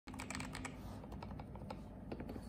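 Typing on a KBD67 Lite R2 keyboard fitted with factory-lubed KTT Red Wine linear switches (POM stems, polycarbonate housings) and NJ80 keycaps. The keystrokes come in a quick, dense run for the first half second or so, then more spaced out.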